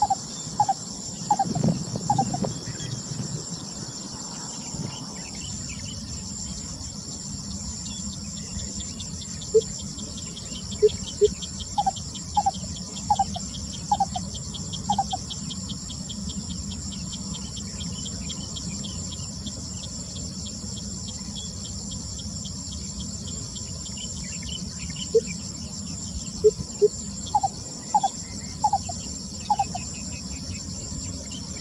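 Lesser coucal singing: short hollow notes in bouts, one at the start, one about ten to fifteen seconds in and another near the end, each run starting low and moving to higher notes. Underneath is a steady insect chorus with a fast, even pulsing trill.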